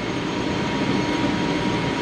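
Steady drone of a ship's engine-room machinery and ventilation heard inside the engine control room, with a thin, steady whine above it.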